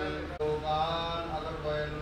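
A man's voice chanting Sanskrit puja mantras in a drawn-out, sung style, holding long steady notes, with a brief break about half a second in.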